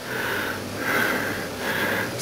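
A person breathing close to the microphone: three soft, noisy breaths in quick succession.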